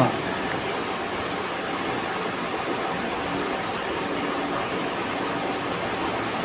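Steady, even background hiss of room noise with a faint low hum, no speech.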